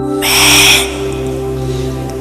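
Slow ambient meditation music with steady held drone tones, cut across by a loud burst of hiss-like noise about a quarter second in that lasts about half a second.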